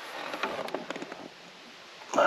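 Rustling handling noise with a cluster of small clicks and scrapes, dying down after about a second.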